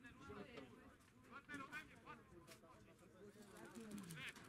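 Faint, distant voices of players calling out across a football pitch.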